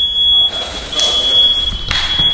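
Smoke alarm sounding a continuous high-pitched tone, set off by a house filled with firework smoke. The tone breaks off briefly about half a second in, over a rushing hiss that swells toward the end.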